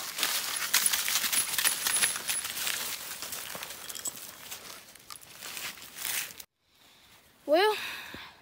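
Coonhounds being turned loose from their collars and dashing off through dry leaves and patchy snow: a rapid run of crunches, rustles and sharp clicks, loudest at first and fading away over about six seconds. A person starts talking near the end.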